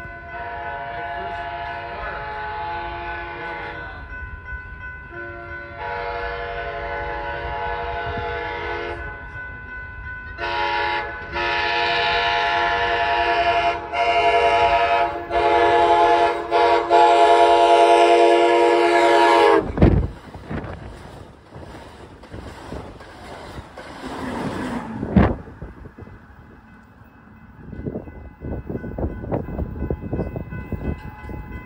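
Passenger locomotive's multi-note air horn sounding two long blasts, a short one, then a long drawn-out blast with brief breaks, getting louder as the train approaches; that is the grade-crossing signal. As the locomotive passes, the horn's pitch drops sharply and cuts off. The horn gives way to the rush of the train running through at speed, with a sharp loud bang partway through.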